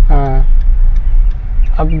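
Low, steady rumble of a car's engine and road noise heard inside the cabin while the car moves slowly.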